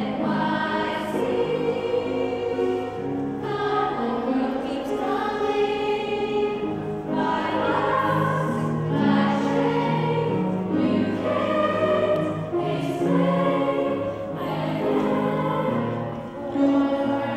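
A group of schoolchildren singing together as a choir, holding long notes in phrases with short breaks between them.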